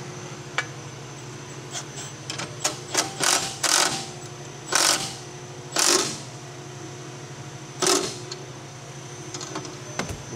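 Cordless Milwaukee ratchet running in five short bursts, tightening the nut on the lever handle's pivot to set the handle's tension. A few light clicks come before the bursts.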